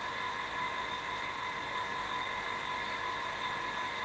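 Steady room noise: an even hiss with faint, steady high whining tones.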